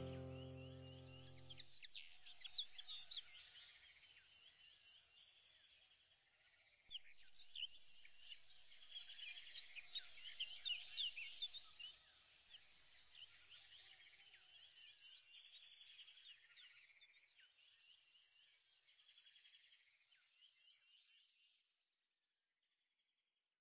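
A held music chord fades out in the first two seconds. After it come faint, high, rapid bird chirps, busiest in the middle and dying away near the end.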